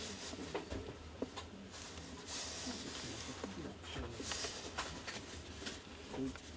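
Cotton-gloved hands handling a Carl Zeiss Planar T* 85mm f/1.4 ZF lens on a Nikon DSLR, turning the lens and its focus ring. Soft rubbing of glove on the metal barrel with scattered small clicks, and two longer brushing stretches in the middle.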